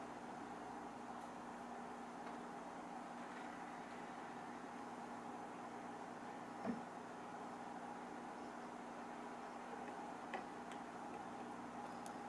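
Faint, steady hum of running aquarium equipment, with a couple of soft ticks, one about two-thirds through and one near the end.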